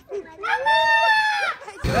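A long, high-pitched cry lasting about a second, followed near the end by a sudden switch to street noise.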